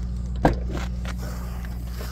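Rear hatch latch of a Kia Sorento releasing with a single sharp click about half a second in, as the tailgate opens. A steady low hum runs underneath.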